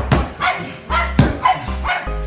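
A small dog barking twice in short yips over loud music with a heavy low beat, with a couple of sharp thumps.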